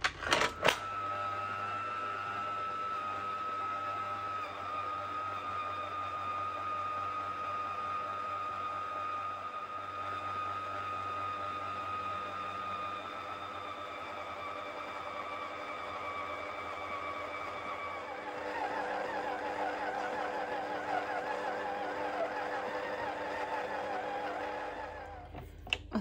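Electric stand mixer with a flat beater running steadily, mixing crumbly flour, butter and milk into a dough, with a steady motor whine. About two-thirds of the way through, the whine turns lower and wavering as the load changes. A click comes as it starts, and the mixer stops shortly before the end.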